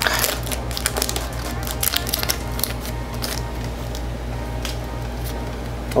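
Foil trading-card booster pack wrapper crinkling and crackling as it is torn open and the cards are pulled out, a run of short crackles thickest over the first few seconds and a sharper snap near the end.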